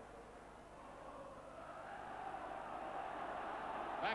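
Football stadium crowd noise, a steady wash that swells gradually louder as the play goes on.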